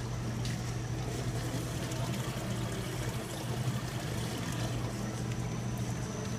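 Steady hum of aquarium pumps and filters with water trickling into the tanks.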